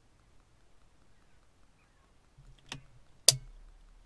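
Caulking gun clicking twice, about half a second apart near the end, the second click louder and sharper, as it is worked on a tube of window-bonding glue.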